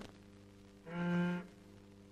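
A single low, cello-like bowed note that swells and fades over about half a second, about a second in. It is the sound of a bow drawn across the edge of a thin disc strewn with sand, the vibration that sets the sand into a pattern.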